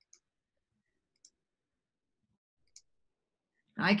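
Three faint computer mouse clicks, spread over about three seconds.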